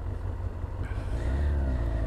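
Kawasaki ZX-6R inline-four motorcycle engine running on the road, a steady low drone whose pitch rises gradually from about a second in as it accelerates.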